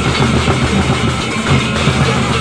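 A Lombok gendang beleq ensemble playing in procession: large double-headed gendang beleq drums beaten together with clashing ceng-ceng hand cymbals, in a dense, continuous texture over steady low ringing tones.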